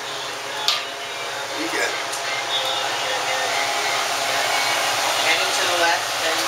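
Tater tots deep-frying in a pot of hot peanut oil: a steady sizzling hiss that grows gradually louder.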